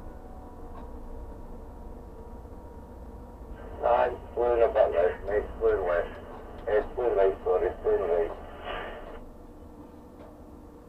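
A voice over a two-way radio, thin and cut off at the top, talking for about five seconds starting about four seconds in, over a steady low hum in the crane cab.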